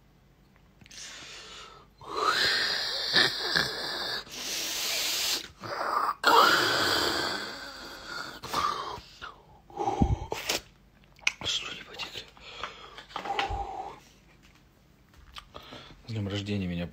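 A man's loud, breathy exhalations and strained cries, several in a row over roughly the first half: his reaction to the burn of a big gulp of cognac. Quieter breaths and two low thumps follow.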